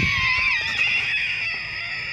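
A long, high-pitched scream held on one wavering note, easing slightly lower toward the end.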